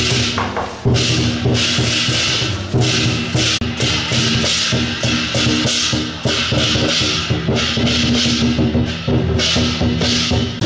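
Temple-procession music: drums and clashing cymbals in a steady beat, over held pitched tones.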